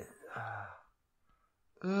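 A person sighing: one short breathy exhale with a little voice in it, about half a second in. Near silence follows until a spoken "uh" right at the end.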